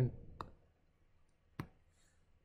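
Two short, sharp clicks about a second apart, from a stylus or mouse as a drawing on a digital whiteboard is selected and dragged, the second click louder.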